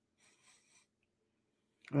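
Near silence apart from a faint breath lasting under a second; a man's voice starts right at the end.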